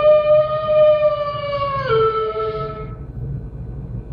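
A single long dog howl. It holds a steady pitch, drops to a lower note about two seconds in, and fades out about a second later.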